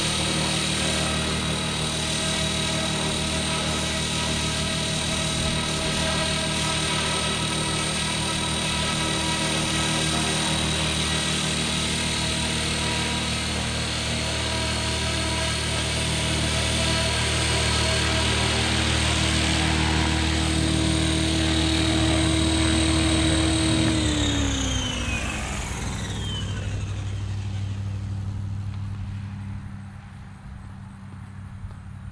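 Electric RC helicopter, a Blade Fusion 480 stretched to 550 size, flying with a steady motor whine and rotor noise. About three-quarters of the way through, the whine glides down in pitch and fades as the rotor spools down.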